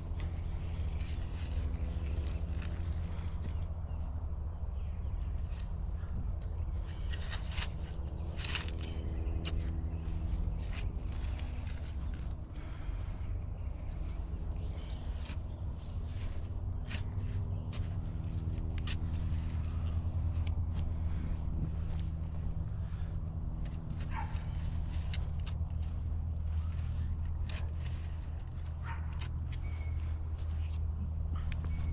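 Steel shovel digging into soft compost and soil, with irregular scrapes and knocks of the blade. A steady low rumble runs underneath.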